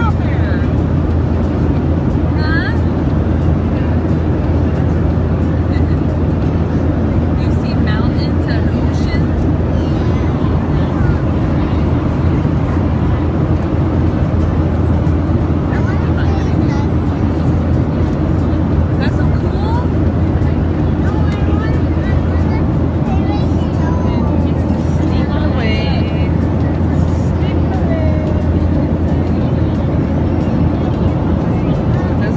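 Steady drone of a jet airliner cabin in flight: engine and airflow noise at an even, constant level, with faint voices now and then.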